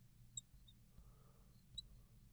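Near silence, broken by a few faint, brief high-pitched squeaks of a marker writing on a glass board, about half a second in and again near the end.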